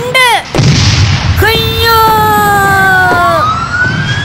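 Comic sound effects: a boom with a low rumble about half a second in, then a long, slowly falling whistle-like tone, and a siren-like rising glide that begins near the end.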